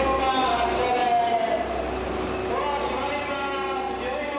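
Electric locomotive rolling slowly past along the platform with its wheels squealing; a thin, high steady squeal joins about two seconds in.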